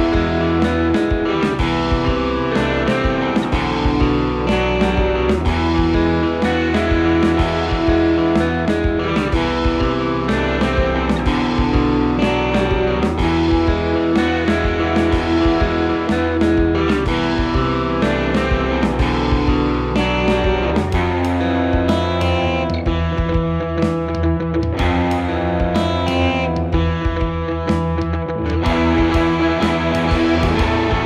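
A multitrack electric guitar song played over a steady beat. One guitar part runs through an Earthquaker Devices Plumes overdrive in mode 1, symmetrical LED clipping, giving a crunchy, compressed, Marshall-like drive with room reverb. The texture thins out for several seconds near the end.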